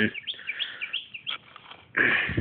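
Small birds chirping: a quick series of short, high chirps over the first second and a half, then fading out.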